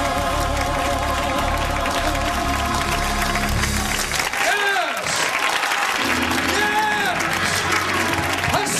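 A gospel choir led by a woman soloist singing with a wavering vibrato, the song ending about four seconds in. Applause and cheering voices with short whooping calls follow.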